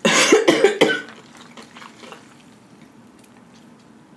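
A woman coughing several times in quick succession, over in about a second.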